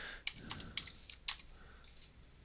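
Typing on a computer keyboard: a run of irregular, fairly quiet key clicks.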